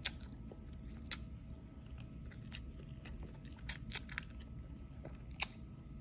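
Close-up mouth sounds of someone eating noodles: faint chewing with a handful of short, wet smacks and clicks spread irregularly.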